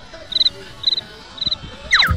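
A cricket chirping: three short, high chirps about half a second apart. A quick falling sweep comes near the end.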